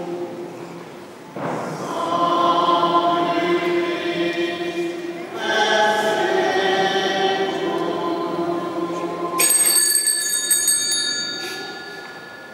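A choir singing long held notes, then, about nine and a half seconds in, altar bells shaken for about two seconds, the bells rung at the elevation of the chalice during the consecration.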